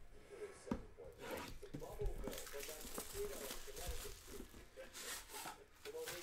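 Plastic wrap tearing and crinkling, with cardboard rustling and light knocks, as a sealed trading-card box is unwrapped and opened by hand.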